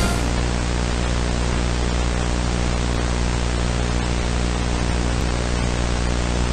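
Steady, fairly loud tape hiss with a low buzzing hum from a VHS tape's audio track where there is no programme sound, just after the commercial's music cuts off.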